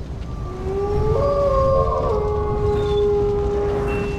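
Wolf howl sound effect: one long howl that rises at first and then holds a steady pitch. A second, higher howl overlaps it for about a second, over a low rumble.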